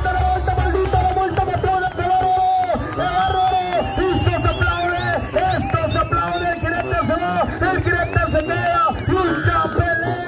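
Oaxacan brass band (banda) music with a pulsing bass line under held horn notes. From about three seconds in, voices shout over the music.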